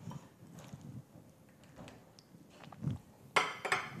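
Faint kitchen handling sounds: light clicks and taps as bits of fried calabresa sausage are picked from a glass bowl and sprinkled onto a dish, with a short, louder rustle about three and a half seconds in.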